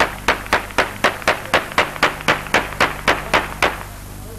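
Hands clapping in a steady rhythm, about four sharp claps a second, stopping just before the end.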